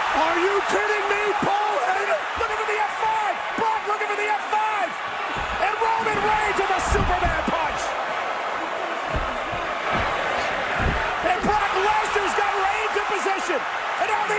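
Large arena crowd cheering and yelling loudly throughout, with several heavy thuds of bodies hitting the wrestling ring canvas.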